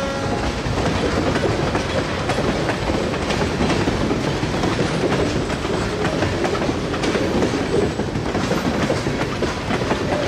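A freight train's cars rolling past, their steel wheels clicking and rumbling over the rail joints. A locomotive horn cuts off right at the start.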